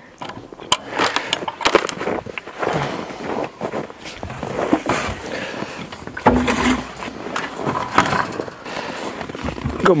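Footsteps crunching over snow-covered frozen ground, with irregular crunches and knocks, and a short low pitched sound a little past six seconds in.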